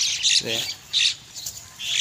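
Birds calling in short, high-pitched bursts, with a brief human voice sound about half a second in.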